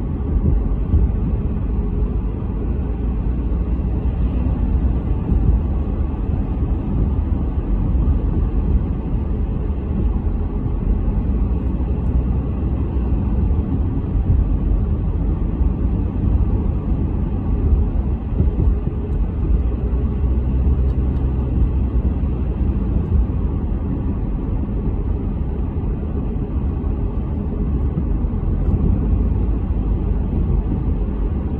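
Car driving on a paved road, heard from inside the cabin: a steady low rumble of road and engine noise.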